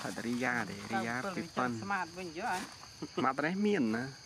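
A man's voice in several short, wavering phrases over a steady, high-pitched drone of insects.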